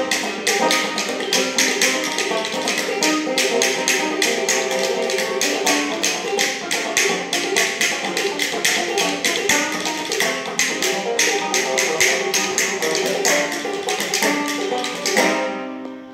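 Banjo played fast over rapid hand claps keeping a steady quick beat, about four to five claps a second. Near the end the claps stop on a last strong accent and the banjo rings out and dies away.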